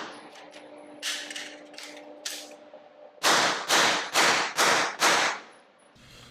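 Suppressed 9mm B&T APC9 carbine. The echo of a shot dies away at the start, then come a few lighter clacks from the gun being handled, then five suppressed shots in quick semi-automatic succession, about two a second, echoing in the indoor range.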